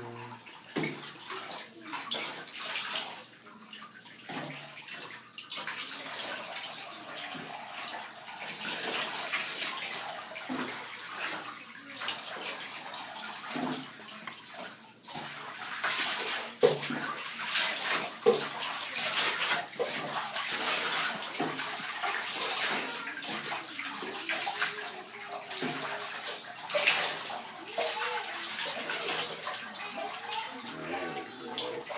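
Bathwater splashing and sloshing in a bathtub as a dog is washed by hand, with irregular pours and splashes that grow busier about halfway through and two sharp splashes a little later.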